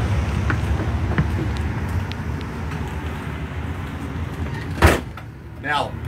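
A steady low rumble, fading gradually, is cut by a single sharp bang of a door shutting a little under five seconds in, after which it is much quieter.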